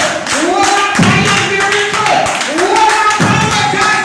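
A woman singing a gospel song into a handheld microphone in long, drawn-out phrases, with steady hand clapping in time.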